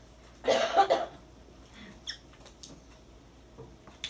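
A person coughing, a quick burst of two or three coughs about half a second in, into the arm held at the mouth.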